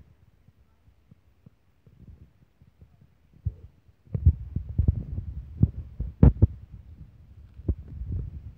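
Handling noise of a phone held close: fingers and hand rubbing and knocking on the body near the microphone. A few faint clicks at first, then from about halfway a dense run of low rumbling and knocks.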